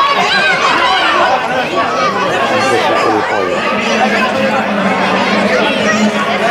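Many voices of spectators along the race course talking and calling out at once, an unbroken babble with no single voice standing out.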